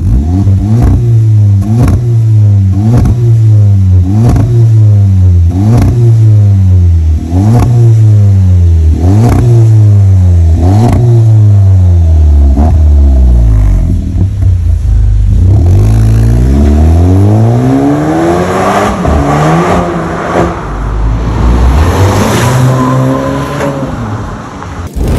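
Skoda Octavia 1.8 turbo four-cylinder running through a tuned exhaust with the resonator removed, a bass muffler and a Helmholtz resonator. It is revved in quick throttle blips about once a second, each falling back before the next. From about 16 seconds in, the revs climb in long rising pulls as the car accelerates away.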